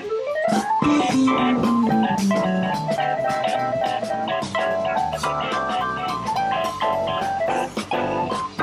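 A rock band playing live: electric guitar leading over drum kit and bass guitar. A note slides up in the first second, then a lower note slides down over the next two seconds, while the drums keep a steady beat.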